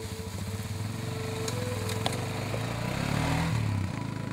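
Sport quad ATV engine running as it is ridden, a rapid steady putter that grows a little louder near the end.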